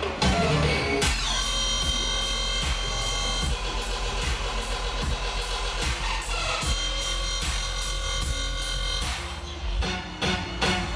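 Dubstep DJ set played loud over a festival sound system, with heavy bass and a regular beat. A falling synth sweep comes in the first second, then sustained synth tones, and there is a short break in the loudness just before the end.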